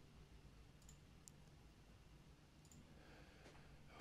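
Near silence: faint room hiss with three faint computer mouse clicks.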